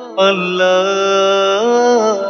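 Male voices singing long held, wordless notes in a Bangla Islamic song (gojol). A new phrase starts just after the beginning and steps up in pitch about one and a half seconds in.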